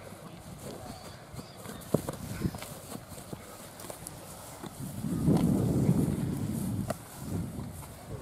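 Thuds of rugby players' feet running on grass and balls being handled, with a few sharp knocks and distant voices; a louder run of low thumps comes about five seconds in and lasts two seconds.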